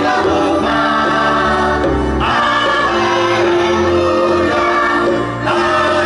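A children's choir singing a slow song with a live band accompanying, held notes moving to a new chord about two seconds in and again near the end.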